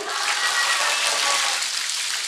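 Audience noise from the seated listeners: a steady, even hiss-like wash, fairly loud.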